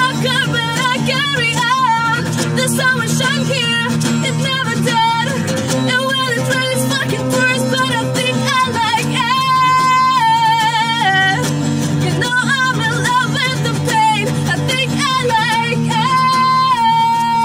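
A woman sings with vibrato over a strummed steel-string acoustic guitar, holding long notes about ten seconds in and again at the end.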